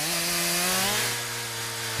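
Stihl two-stroke chainsaw running at high revs while cutting branches off a felled tree, its pitch shifting slightly about a second in as the cut loads it.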